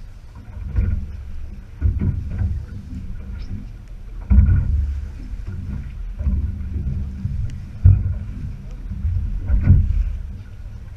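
Small boat's hull being slapped by choppy sea while it drifts, with wind buffeting the microphone. Irregular low thumps come every one to three seconds over a steady rumble.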